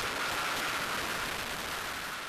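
Steady rushing wind noise of skydiving freefall, heard through the jump camera's microphone, fading slightly over the two seconds.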